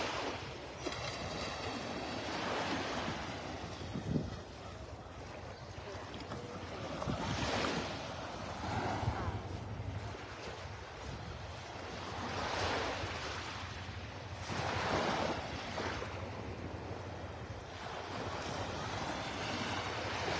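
Small Gulf of Mexico waves washing up a sandy shore, the surf swelling and fading every few seconds, with wind on the microphone.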